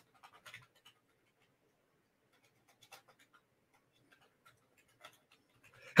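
Near quiet: faint room tone with a few scattered soft clicks.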